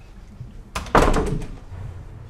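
A loud thud with a quick run of knocks just before the first second, over in about half a second.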